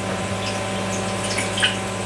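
About half a cup of water being poured into the bottom tray of a Ninja Combi, over a steady low hum.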